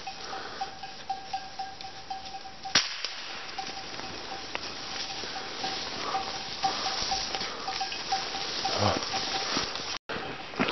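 A small bell ringing in a quick, even rhythm, about three or four rings a second, over the rustle of someone walking through forest undergrowth. A single sharp snap comes about three seconds in.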